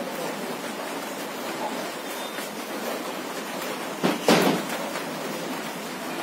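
Steady background hiss of room noise, with two short, scratchy noise bursts about four seconds in.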